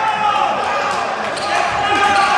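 Live game sound in a gymnasium: sneakers squeaking on the hardwood court, a basketball bouncing and players' voices, with the echo of a large hall.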